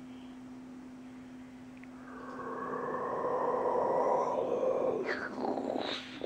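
A dog makes one long, drawn-out vocal sound, like a whining groan or yawn. It swells from about two seconds in and fades out about three seconds later, over a steady low hum.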